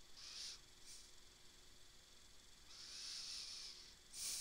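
Near silence with two soft breaths into a headset microphone, a short one just after the start and a longer one near the end.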